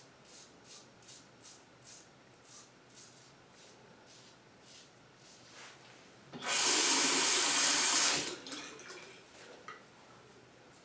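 Gem Jr single-edge safety razor scraping through lather and stubble in short strokes, about two to three a second. About six seconds in, a sink tap runs loudly for about two seconds, then shuts off.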